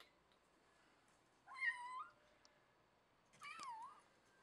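A kitten meowing twice, two short calls about two seconds apart.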